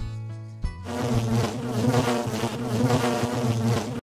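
Outro music with a few short beats, then from about a second in a loud buzzing sound effect over a tune, the logo sting that closes the video.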